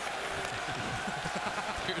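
Ice hockey arena crowd noise: many voices overlapping in a steady din, with a commentator's voice coming in near the end.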